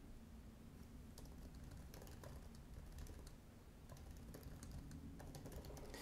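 Faint typing on a computer keyboard: a run of quick key clicks starting about a second in.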